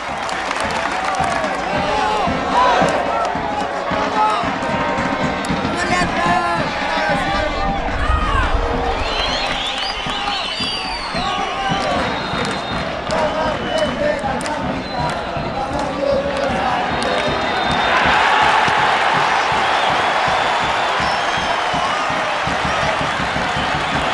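Football stadium crowd: many voices shouting and calling over one another. The crowd noise swells louder about eighteen seconds in.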